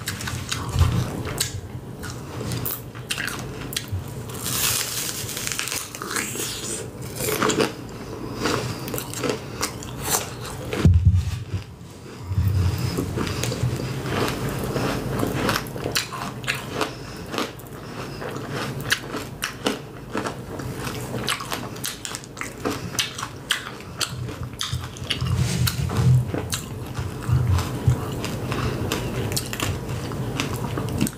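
Close-up chewing and crunching of a candy apple: bites through the hard red candy coating and crisp apple flesh, with many small irregular crackles.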